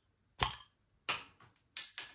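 A crown cap levered off a glass beer bottle with a bottle opener, giving a sharp pop about half a second in, followed by two metallic clinks, the second and loudest one ringing briefly near the end.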